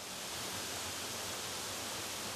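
Waterfall pouring down into a rock pool: a steady rushing hiss of falling water that swells up in the first half second and then holds even.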